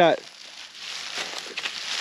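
Rustling and crackling of dry grass underfoot, a little louder from about a second in.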